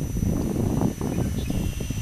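Uneven low rumble of wind buffeting the microphone of a handheld camera, without pitch or rhythm.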